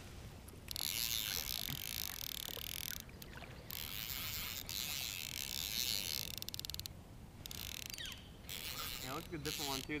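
Lamson Liquid fly reel buzzing in stretches of a few seconds that start and stop abruptly while a hooked carp pulls against the rod, with a quick run of clicks about two thirds of the way through.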